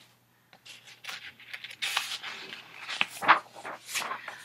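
Paper pages of a picture book being handled and turned: a run of short, scratchy rustles and rubs starting about half a second in.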